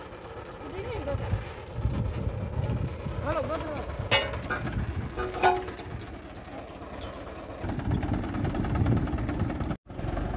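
Mahindra 475 DI tractor's diesel engine running steadily, with faint voices nearby and two sharp clicks, about four and five and a half seconds in.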